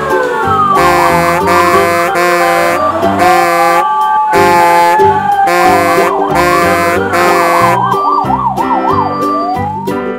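A siren wailing in slow rising and falling sweeps, switching to a fast yelp warble about three-quarters of the way through, over cheerful background music with a steady beat.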